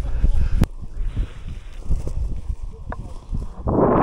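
Wind buffeting the microphone and rustling movement through wet heather. The heavy low rumble eases off after a sharp click in the first second. A short laugh comes about two seconds in, and the rustling surges near the end.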